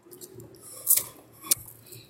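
Faint rustling handling noise on a handheld microphone, with a short hiss a little under a second in and a sharp click about a second and a half in.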